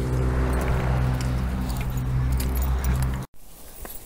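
A nearby vehicle engine running steadily with a low, even hum. It cuts off suddenly a little over three seconds in, leaving only faint outdoor sound.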